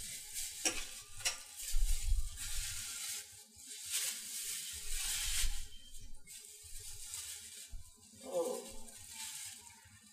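Thin plastic bag rustling and crinkling in irregular bursts as it is handled and opened, with a few sharp crackles about a second in.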